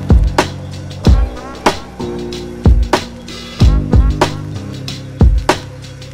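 Dark 90s-style boom bap hip hop instrumental at about 94 beats per minute: a hard, regular kick and snare pattern over a low bass line that changes notes.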